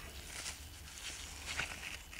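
Faint rustling of rubber-gloved hands handling a pad of wet, rusted steel wire wool on paper towel, with a few soft clicks over a low steady hum.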